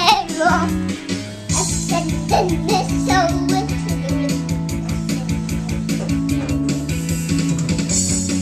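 Karaoke backing track with drums and guitar playing at a steady beat, with a toddler's high voice singing along in wavering lines over roughly the first three seconds, then the instrumental carrying on alone.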